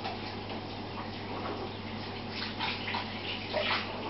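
Aquarium water trickling and splashing at the surface in irregular bursts, over a steady low hum.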